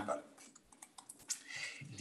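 A few faint, scattered clicks of keys on a computer keyboard in a pause between words, with the voice coming back near the end.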